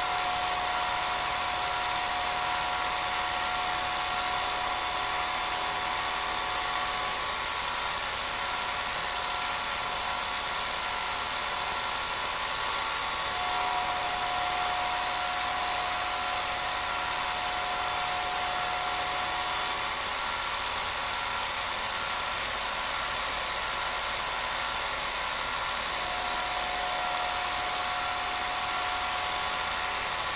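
Home-movie film projector running steadily, its motor and film mechanism making a constant mechanical noise, with a faint whine that comes and goes.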